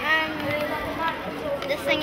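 Speech only: children's voices, a girl starting to answer a question, with other children talking nearby.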